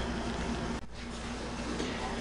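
Steady background hiss with a faint hum, dipping briefly a little under a second in where the recording cuts, then carrying on unchanged.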